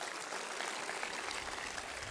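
A large crowd applauding steadily: a dense, even patter of many hands clapping.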